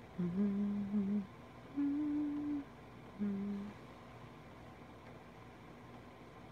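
A woman humming three short notes with her mouth closed: a low note lasting about a second, a higher note, then a brief return to the low note.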